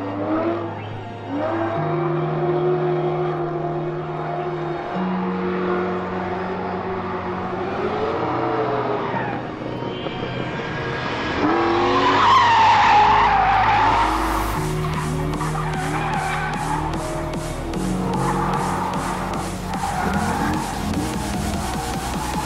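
C5 Corvette's LS V8 revving up and down through a drift with tyre squeal, loudest about 12 to 14 seconds in. Electronic background music with a steady beat plays underneath.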